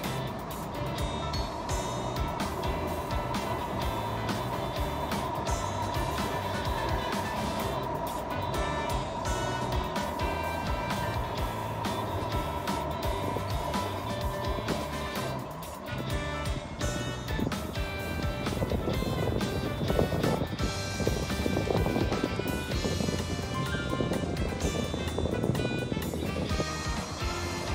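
Light background music over the running noise of a Tokaido Shinkansen train crossing a steel truss railway bridge. The train noise grows louder over the last several seconds.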